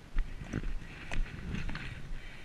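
Horse's hooves striking a wet paved path: a handful of sharp, unevenly spaced hoofbeats.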